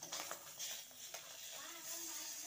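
Oil sizzling in a metal kadai as a small piece of fish fries, with a spatula scraping and stirring against the pan in short strokes.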